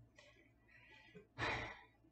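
A woman sighs: one breathy exhale about one and a half seconds in, after a few fainter breaths.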